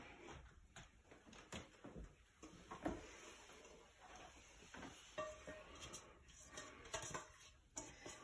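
Faint, scattered knocks and scrapes of a cooking pot being tipped and emptied of a sticky chocolate cereal mixture into a plastic container.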